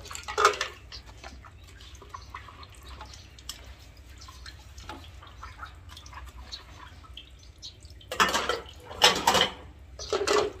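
Ceramic bowls and plates clinking against each other and water splashing in a basin as dishes are washed by hand. Light clinks run throughout, with louder splashing bursts about half a second in and twice near the end.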